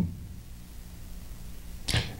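A pause in a man's talk: quiet room tone with a faint steady low hum, and a short sharp breath in near the end.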